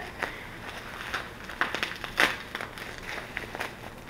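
Plastic packaging and bubble wrap crinkling in irregular crackles as items are handled and pulled out of a box.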